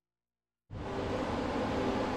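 Dead silence, then about two-thirds of a second in, a loud rushing whoosh with a low rumble and a few held tones starts abruptly: the opening of a produced intro sting.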